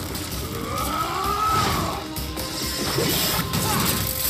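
Animated fight-scene soundtrack: crashing impact and whoosh sound effects over a dramatic music score, with a tone that rises and falls about a second in.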